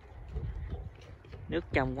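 Footsteps on a shore of small pebbles and broken stone, a few steps a second over a low rumble. A man's voice starts near the end.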